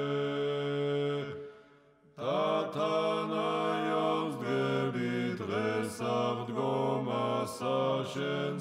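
Slow sung church chant of long held notes, breaking off briefly about a second and a half in, then resuming.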